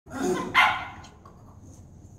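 A small dog barking twice in quick succession in the first second, the second bark louder.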